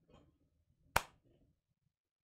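A single sharp hand clap about a second in, with faint rustling before and after it.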